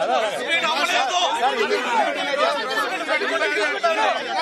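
A crowd of men talking loudly over one another at close range, a dense tangle of voices with no single speaker standing out.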